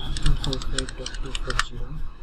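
Computer keyboard typing: a quick run of key clicks as numbers are entered, stopping shortly before the end.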